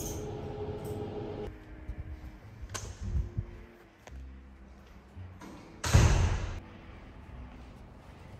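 A short, sharp thud about six seconds in, with a couple of softer knocks around three seconds, over faint steady tones.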